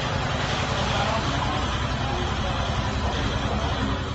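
Steady low rushing noise of a gas burner flame heating a kettle, with faint voices under it.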